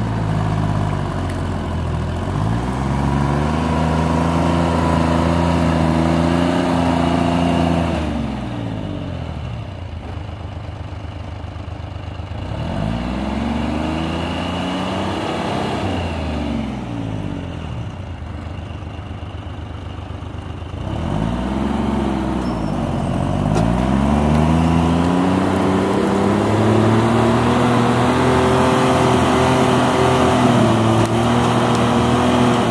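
Timberjack 225 cable skidder's diesel engine revving under load while working its blade behind a stump. It revs up three times, dropping back to a lower pitch in between, and stays high near the end.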